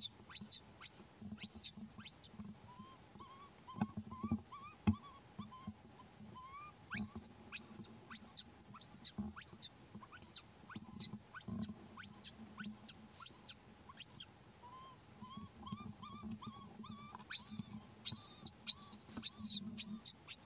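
Baby macaque crying, a string of short, squeaky rising cries that come in clusters with brief pauses between them.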